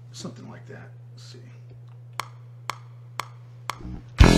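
Four sharp metronome clicks half a second apart, a count-in, over a steady low electrical hum. Faint murmured speech comes before the clicks.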